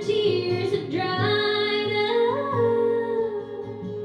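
A woman singing a slow song with long held notes, accompanied by acoustic guitar, performed live.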